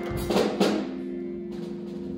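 Live church band at the close of a song: a few drum and cymbal hits in the first second over a held keyboard chord that carries on quietly.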